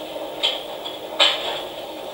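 Two short clicks about three-quarters of a second apart, over a steady background hiss.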